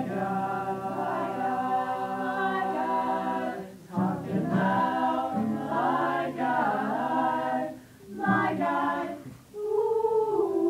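A small group of young women singing a cappella in close harmony, holding chords in phrases with brief breaks about four seconds in and near the end.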